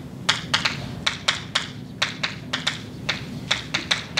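Chalk writing on a blackboard: an irregular run of sharp taps and clicks, a few a second, as each letter is struck onto the board.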